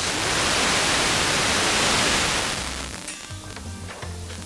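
Loud, even hiss from an analogue TV receiver's sound channel as the distant sporadic-E signal fades into the noise. The hiss eases off after about two and a half seconds, and the station's programme music comes faintly back through it near the end.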